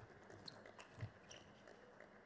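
Table tennis ball being struck by rubber-faced bats and bouncing on the table in a doubles rally: a handful of faint, sharp ticks at uneven intervals, the loudest about a second in.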